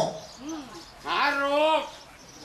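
A male pleng Korat singer's voice: a short rising-and-falling syllable about half a second in, then one drawn-out, wavering sung note on the words "หา โรค" ("to seek the illness") in a Korat folk-song verse.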